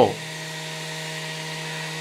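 Steady electrical hum of a radio umformer, the rotary motor-generator that makes the high tension for the tubes of a Lorenz FuG 16/17 airborne radio, running continuously: a low hum with a stack of overtones.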